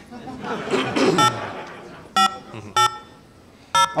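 Touch-tone telephone keypad dialing: four short beeps of combined tones, spaced unevenly about a second apart.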